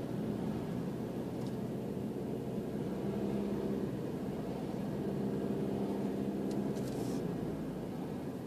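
Car driving at steady speed, heard from inside the cabin: a low engine hum under tyre and road noise, with a few faint clicks near the end.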